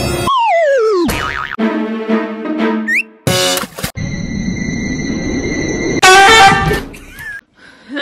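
Comedy sound effects and music added in editing: a falling whistle-like glide, a short chord with a quick upward slide, then a steady tone and a loud short pitched sting about six seconds in.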